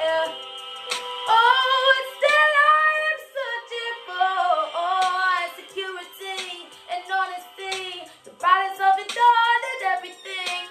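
A woman singing a cappella, melodic runs and held notes that slide up and down in pitch, with short breaks between phrases. The sound rings in a small tiled bathroom.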